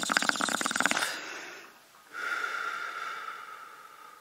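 Edited-in outro sound effects: a rasping buzz that fades out in the first two seconds, then a steady ringing tone that starts about two seconds in and slowly fades.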